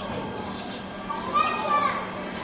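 Overlapping voices of people outdoors, with one louder drawn-out shout about two-thirds of the way through.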